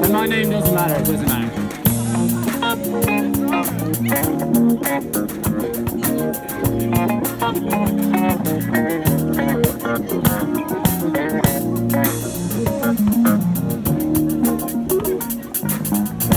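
Live fusion jam: electric guitar played through a small Roland Cube amp over bass guitar, with fast, even cymbal strokes keeping time.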